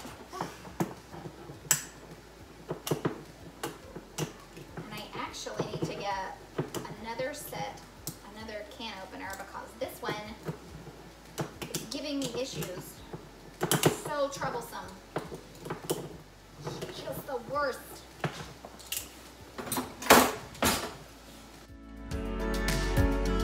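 Kitchen clatter of jars, lids and utensils being picked up and set down on a counter, a series of sharp clicks and knocks, the loudest near the end. A child talks in the background through the middle stretch.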